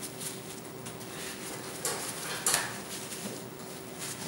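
Soft rustling of bathroom tissue as a loaded oil-paint brush is wiped clean in a clump of it, with two brief scratchy swipes about half a second apart near the middle, over a faint steady hum.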